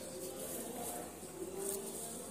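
Faint buzzing of a flying insect, a thin hum that comes and goes.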